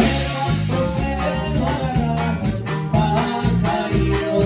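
A norteño conjunto playing live: accordion, saxophone, drum kit and plucked strings, with a steady drumbeat under a melody line.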